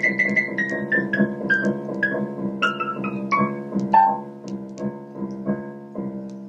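Piano-sounding keyboard playing a slow melody of separate struck notes over a steadily held low note.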